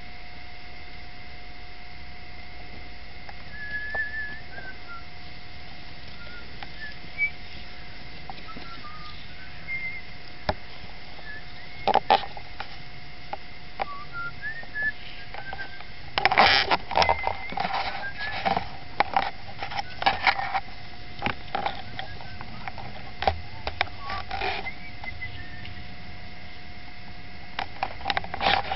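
Small birds chirping now and then, short scattered calls, over a steady hiss and hum. In the second half comes a run of sharp, scratchy scrapes and knocks, louder than the chirps.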